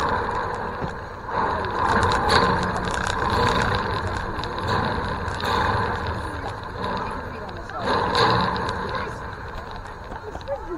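Indistinct voices of people at a youth baseball game talking and calling out, rising and falling in uneven surges, with no clear words.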